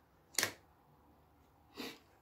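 A single short, sharp click about half a second in, then a soft breath drawn in near the end, just before speaking resumes.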